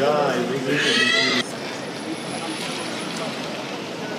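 A short, high-pitched wavering cry or laugh that cuts off abruptly about a second and a half in, followed by steady background crowd noise.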